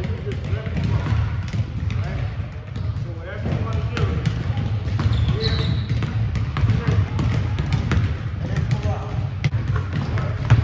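Several basketballs being dribbled on a hardwood gym floor, with quick, overlapping bounces throughout. Voices talk in the background.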